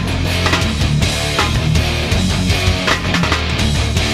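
Hardcore/metalcore band recording playing an instrumental stretch: distorted electric guitar chords over a steady drum beat, with no vocals.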